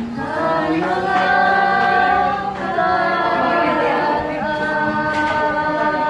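A small group of children and a young woman singing together, holding long notes.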